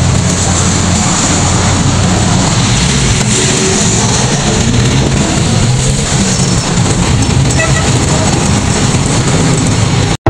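Steady loud rumble of a jeepney's engine and road noise heard from inside the open-sided passenger cab while it drives, with wind rushing through the open sides.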